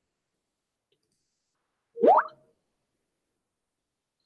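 A single short plop-like blip about two seconds in, its pitch rising steeply, lasting about a third of a second, in otherwise near silence.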